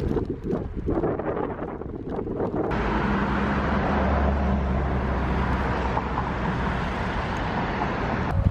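Wind rumbling on the microphone of a camera riding on a moving bicycle, then about three seconds in, steady road-traffic noise with a low engine hum at a street crossing.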